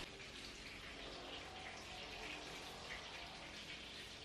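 Faint room tone: a steady low hiss with a faint hum and no distinct events.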